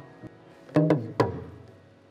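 Kalangu hourglass talking drum struck twice with a curved beater, about a second in and half a second apart, after a faint tap. The pitched notes phrase the word "come" as the drum imitates speech.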